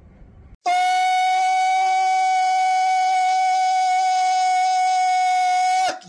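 A single long, steady electronic beep held at one pitch. It starts abruptly about half a second in and cuts off just before the end.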